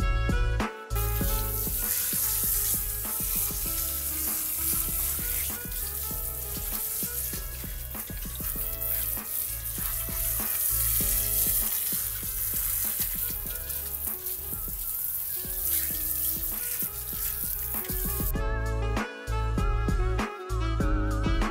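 Handheld shower head spraying water onto a dog's coat in a wooden tub, a steady hiss that starts about a second in and cuts off near the end.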